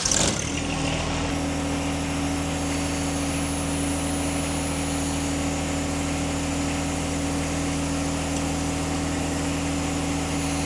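Tractor engine running at a steady speed, an even low hum, while its hydraulics slowly pull a load down onto a shelf bracket.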